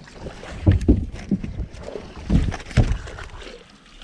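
Irregular low thumps and rumble of people moving on a bass boat's carpeted deck, picked up by a body-worn camera, loudest about a second in and again between two and three seconds in.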